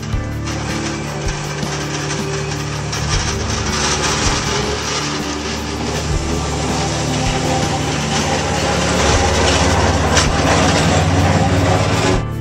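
The running noise of a vintage double-deck electric tram on its rails, growing louder as it draws near, heard over background music.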